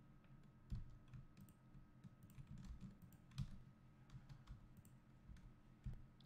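Near silence with faint, irregular clicks of a computer keyboard and mouse.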